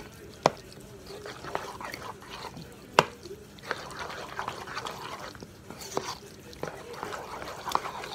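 A fork stirring and mashing a thick, wet tuna-and-egg mixture in a bowl, with sharp clicks of the fork against the bowl. The loudest click comes about three seconds in.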